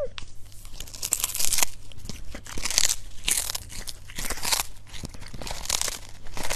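A cat biting and chewing a whole small raw fish, with repeated wet crunches of the fish's bones and flesh, about two a second.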